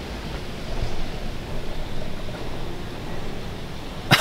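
Steady low rumbling background noise with no distinct events.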